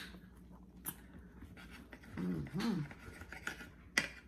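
A knife and fork clicking and scraping on a plate as French toast is cut, with a short hummed "mm" voice sound in the middle.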